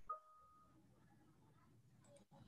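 Near silence, with a faint, brief steady tone in the first second.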